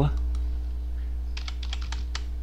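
Computer keyboard being typed on: a quick run of about half a dozen keystrokes, starting a little past the middle, as digits are entered. A steady low hum runs underneath.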